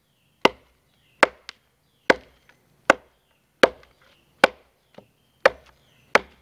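Machete chopping a V-notch into a log: seven sharp chops, roughly one every 0.8 seconds, with a few lighter ticks between them.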